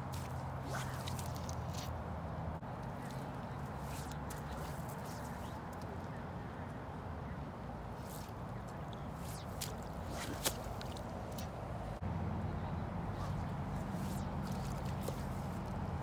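Spey casting with a two-handed fly rod while wading: the fly line swishes through the air and lifts and slaps on the water, heard as scattered short ticks and splashes over a steady low outdoor rumble. A single sharper tick about ten and a half seconds in is the loudest sound.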